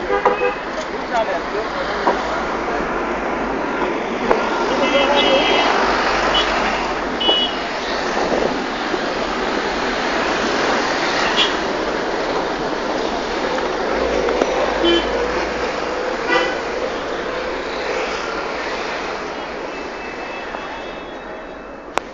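Busy street traffic: vehicle engines and road noise with several short horn toots and voices in the background, easing off near the end.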